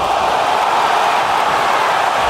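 Boxing arena crowd cheering steadily, a dense wash of many voices.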